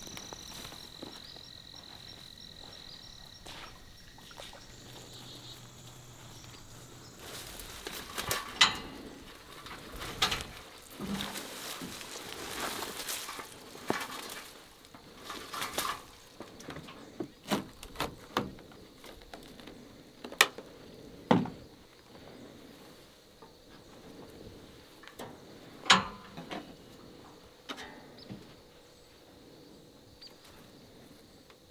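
Faint insect trilling at first, then a series of knocks, clinks and footfalls as a hunter climbs the metal steps onto a Redneck hunting blind's platform and handles its door and his gear. The sharpest knocks come about 20 and 26 seconds in.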